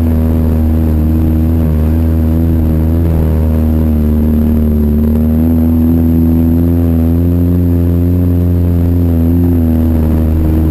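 Quad bike (ATV) engine running steadily at low road speed, its pitch wavering a little with the throttle over the rough track.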